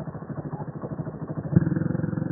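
Quad bike engine idling close by with a steady, rapid pulse, growing louder about one and a half seconds in.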